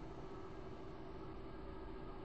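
Faint steady background hiss with a low hum: room tone of an open microphone, with no distinct event.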